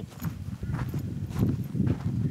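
Footsteps crunching on gravelly sand, several steps about half a second apart.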